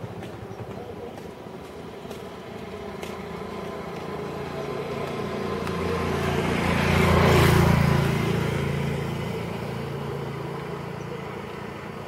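A motor vehicle passing by on the road: its engine hum grows louder over several seconds, peaks with a rush of tyre and engine noise about seven seconds in, then fades away.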